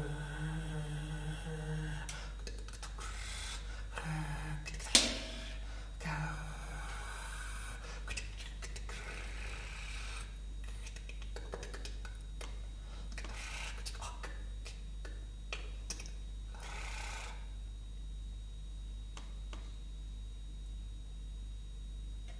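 A man laughing in short bursts at the start and again briefly around four and six seconds, with a sharp click about five seconds in. After that come only faint scattered clicks and short hisses over a steady low hum.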